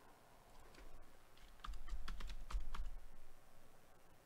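Typing on a computer keyboard: a quick run of keystrokes starting about a second and a half in and lasting just over a second.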